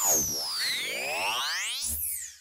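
Synthesized sound-effect sting for an animated title card: several electronic tones sweeping down and up in pitch at once, with a low thud shortly before the end.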